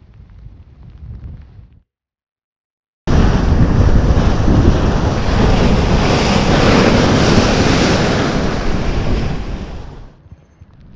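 Heavy storm surf breaking and rushing up onto beach stairs, a loud, steady wash of noise. It cuts in suddenly about three seconds in, after faint low rumbling and a second of dead silence.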